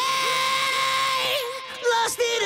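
A male rock singer's lead vocal, heard on its own, holds one long high sung note for about a second and a half and then trails off. The vocal runs through a quarter-note stereo delay (Waves H-Delay, regular mode, not ping-pong) that adds echoes to it.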